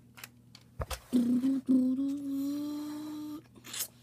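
A boy's voice holding one long hummed groan for a little over two seconds, starting about a second in and rising slightly in pitch. It follows a single click and is followed by a short hiss near the end.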